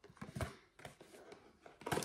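Cardboard product box being handled and opened by hand: a few soft scrapes and small taps.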